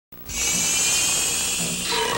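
Electronic soundtrack of an MTV station ident: a steady high buzzing hiss over a low hum, coming in abruptly just after the start.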